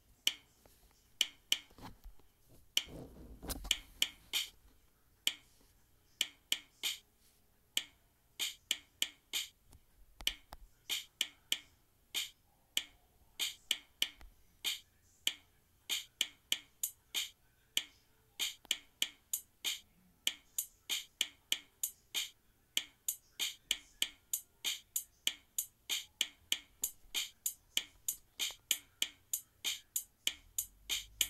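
Chrome Music Lab's Rhythm sequencer looping a short beat of sampled drum and cymbal hits, heard as crisp repeating clicks. The pattern fills in and grows busier as more beats are added to the grid.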